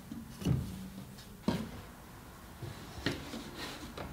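Folded sweaters and sweatshirts being set into a wooden dresser drawer and patted flat by hand: soft fabric rustling with a few light knocks against the drawer.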